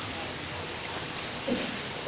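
A pause in a man's talk: only the steady hiss of the room and recording, with one brief faint sound about one and a half seconds in.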